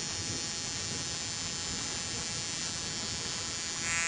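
Ignition coil tester powered by a car battery, firing an NGK Iridium spark plug: the spark jumps the gap over and over, making a steady electrical buzz. The buzz grows louder right at the end.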